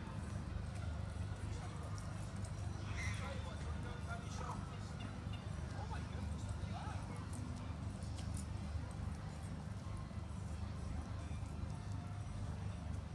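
Outdoor pond-side ambience: a steady low rumble with faint, indistinct distant voices. A few short faint calls come about three, four and seven seconds in, and there are scattered light clicks.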